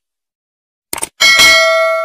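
Subscribe-button sound effect: a quick double click just before a second in, then a notification bell ding that rings with several steady tones and fades away.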